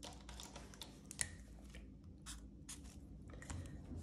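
Faint, scattered clicks and light rustling from hands handling a ring-binder cash-envelope planner and a marker pen, with a sharper click about a second in.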